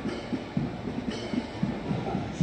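Heavy truck-mounted multiple rocket launcher with a steady low rumble as it drives past, with faint band music.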